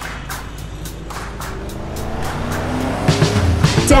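A cartoon car sound effect over a thin music bed: an engine rising in pitch and getting louder toward the end as it revs up. The sung verse comes in right at the end.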